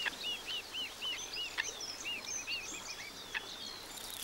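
A small bird singing a long run of short, high, arched notes that speed up near the end, with fainter higher chirps above it, over a soft outdoor hiss.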